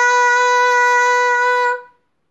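A girl's voice holding one loud, steady 'aaa' on a single high note, which stops shortly before the end. It is aimed at a balloon stretched over a bowl, and it sets the sugar grains on the balloon vibrating.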